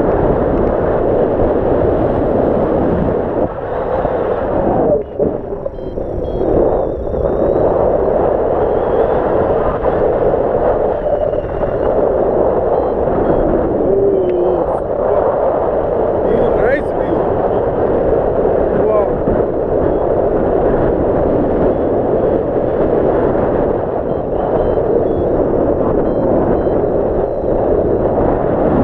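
Airflow of a paraglider in flight rushing over an action camera's microphone: a loud, steady wind buffeting that eases briefly around five seconds in.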